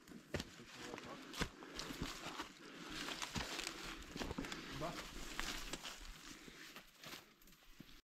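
Footsteps crunching on dry leaf litter and twigs on a forest trail, with irregular crackles and the rustle of brushed plants and clothing.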